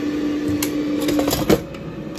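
An air fryer's basket drawer is slid back in and shuts with a sharp clunk about one and a half seconds in, after a few light clicks of metal tongs and basket. A steady hum runs beneath and stops just before the clunk.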